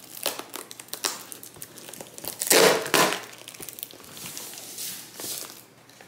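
A taped cardboard shipping box being pulled open by hand: cardboard flaps and packing tape tearing and creaking, with the shredded paper filler inside being disturbed. The loudest burst comes about two and a half seconds in.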